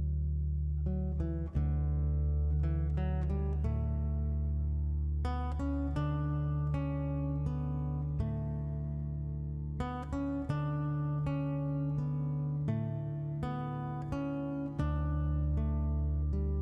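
Instrumental acoustic guitar music: plucked notes, one after another, ringing over held bass notes.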